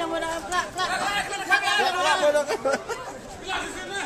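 Several people talking and chattering over one another, no words clear enough to transcribe.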